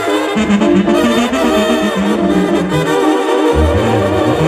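Banda brass section playing live: trumpets and trombones carry the melody over a tuba bass line, an instrumental passage between sung verses.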